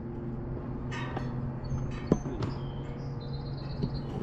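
Outdoor ambience: a steady low hum, with a few faint high chirps like small birds and a single knock about two seconds in.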